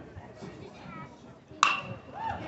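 Metal baseball bat hitting a pitched ball about one and a half seconds in: a single sharp crack with a brief ringing ping, over faint spectator chatter.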